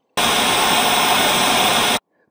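A loud, steady burst of white-noise static hiss that starts just after the beginning and cuts off suddenly at the end.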